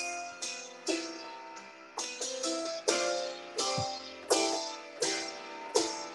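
A melodic riff played on a studio keyboard with a plucked-string sound: sharply struck notes that each die away quickly, in short quick phrases about a second apart.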